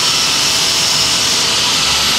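Steady mechanical whirring with a strong hiss, holding one level with no change, like a motor-driven machine running nearby.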